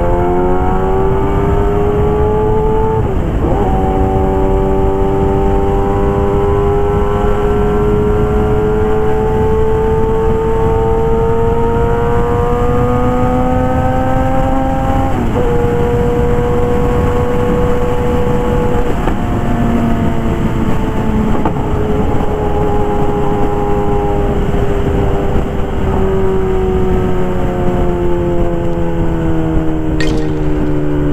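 Kawasaki ZX-10R's inline-four engine through an SC Project CRT exhaust, heard from the rider's seat while riding. The engine note climbs slowly, drops sharply about three and fifteen seconds in, then eases lower through the second half, over a steady rush of wind.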